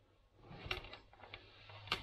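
Faint handling noise of plastic: light rustling and a few small clicks as protective plastic is taken off a security camera.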